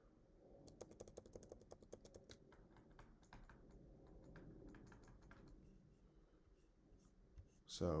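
Faint, quick clicking and tapping of a stylus writing on a pen tablet, lasting about five seconds and then trailing off.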